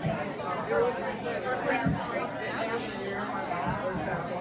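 Many overlapping conversations at once: the babble of a roomful of adults and children talking in pairs, in a large room.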